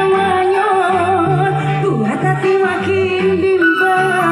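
Live dangdut band music played loud over a PA, with a singer's ornamented, wavering melody line over a steady, stepping bass.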